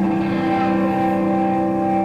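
Live electric guitar and bass guitar holding sustained, distorted notes in a steady drone, with no drumbeat. The held chord shifts to a new note right at the start.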